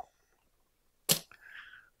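Near silence broken about a second in by one brief sharp hissing click close to the microphone, followed by a faint breathy sound.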